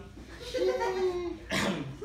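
A man's drawn-out voiced sound, one held note lasting about half a second, followed by a short breathy burst near the end.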